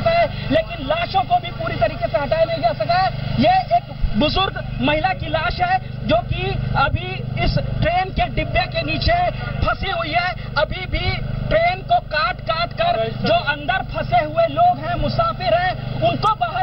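A man talking continuously into a hand microphone, over a steady low hum.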